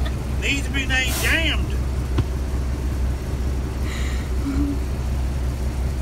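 Semi truck engine idling with a steady low hum, heard from inside the cab with the door open. A short high-pitched laugh comes about a second in.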